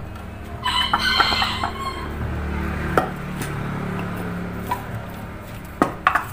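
A bird call with a bending pitch about a second in, over a low steady hum, with a few light clicks from tools on the spring and the scooter's CVT cover.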